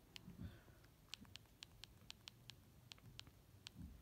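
Faint, irregular clicks of a cell phone's buttons being pressed, about a dozen, while scrolling through its menus, with two soft low bumps, one about half a second in and one near the end.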